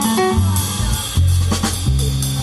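Jazz trio playing: plucked upright double bass notes over a drum kit with cymbals, with piano.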